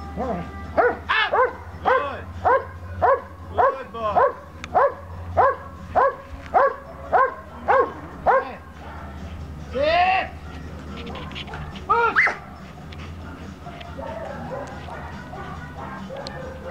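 Dobermann barking over and over during protection training, a steady rhythm of about one to two barks a second for most of eight seconds, then one longer bark and a final quick pair after a short pause.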